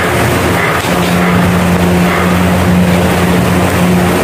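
A loud, steady mechanical hum with a low droning tone, like a motor running.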